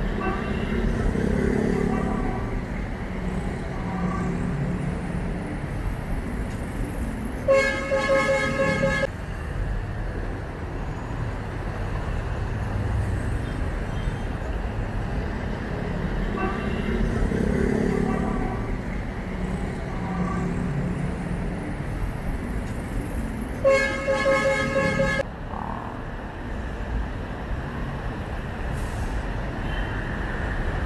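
Steady road traffic noise from passing cars, vans and motorcycles, with a vehicle horn sounding twice, each blast about a second and a half long.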